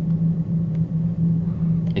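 A steady low hum on the recording, unbroken and fairly loud, with no other event.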